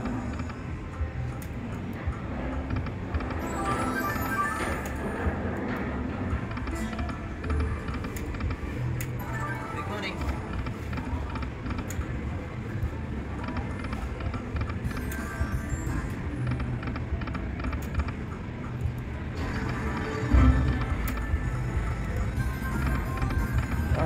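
Aristocrat Buffalo Gold slot machine sounding through repeated reel spins: game music and spin tones with clicks, over casino background chatter. A louder low rumble comes near the end.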